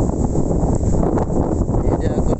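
Strong storm wind buffeting the microphone: a loud, rough, continuous rumble.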